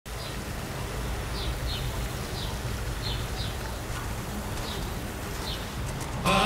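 Park fountain splashing steadily into its pond, with a bird giving short high chirps about eight times.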